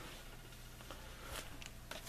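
Quiet room tone with a faint low hum. A few faint light clicks come near the end as a hand starts to handle the stack of comic books.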